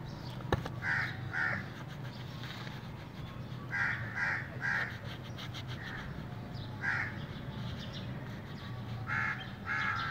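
A bird calling in short calls, repeated in groups of two or three, over a steady low hum.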